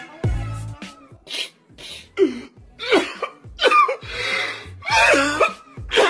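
A man sniffling and sobbing, with a string of gasping cries about a second apart, over music with a deep bass line.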